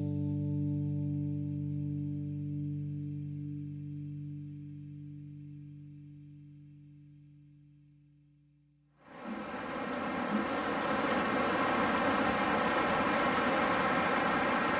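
The song's final sustained chord rings and fades out steadily over about nine seconds. Then the rushing noise of ocean surf breaking on a beach cuts in suddenly and carries on steadily.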